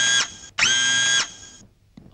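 Electric motor whirring sound effect in short bursts: one burst cuts off just after the start, and another runs for about half a second, each rising quickly to a steady high pitch. It accompanies a character's stiff, machine-like arm movements.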